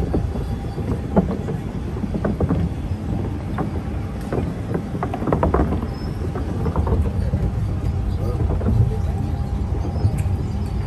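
Steady low rumble of a small vehicle driving over wooden boardwalk planks, heard from inside its cab, with people's voices in the middle.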